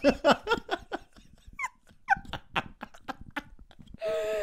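A man and a woman laughing hard: rapid breathy bursts that thin out about a second in, broken by a couple of high, squeaky wheezes.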